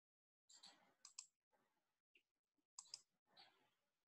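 Near silence: room tone with a few faint clicks, two close together about a second in and a pair near three seconds.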